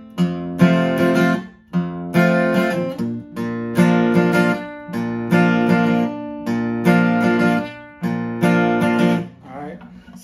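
Steel-string acoustic guitar strummed in a repeating country pattern: a bass note, then down, down, up strums, then a palm-muted stop, cycling between E and A chord shapes. The chords are played capoed on the second fret with the strings tuned a half step down. The lower notes shift to the other chord about three seconds in, and the playing stops just before the end.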